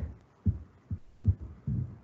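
Quiet room with four soft, dull, low thumps, evenly spaced about two to three a second.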